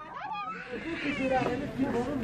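A child wailing and crying out in high, wavering cries over adults' voices; it grows louder about half a second in.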